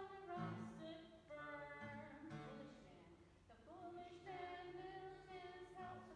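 Faint singing with acoustic guitar accompaniment: a sung children's chapel song, its held notes rising and falling.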